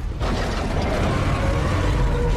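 Machinery sound effect on an animation's soundtrack: a steady low rumble with mechanical creaking and ratcheting and a few faint held tones.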